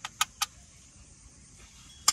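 Two sharp metallic clinks about a quarter second apart, a metal spoon knocking against a steel cooking pan as noodles are dished out.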